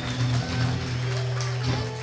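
A live band playing, with bass and electric guitar, dying away near the end.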